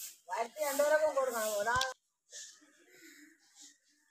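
A single drawn-out vocal call with a wavering pitch, lasting about a second and a half, followed by faint low scattered sounds.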